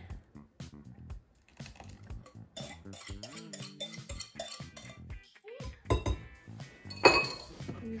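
A metal whisk clinking and scraping against glass mixing bowls as thick muffin batter is poured from one bowl into another, in scattered small knocks. There is a single sharper, louder knock about seven seconds in.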